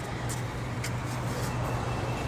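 A vehicle engine idling, a steady low hum, with a few faint light clicks over it.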